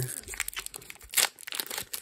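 Foil booster pack wrapper crinkling as it is handled, a run of short crackles with the sharpest about a second in.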